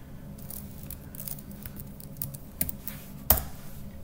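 Computer keyboard being typed on: a few scattered keystrokes entering a password, then one louder click a little over three seconds in.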